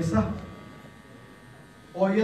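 A man's speech phrase trailing off in the first half-second, then a pause in which only a faint, steady electrical buzz from the recording or sound system is heard.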